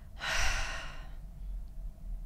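A woman's breathy sigh, lasting about a second from just after the start, as she becomes emotional.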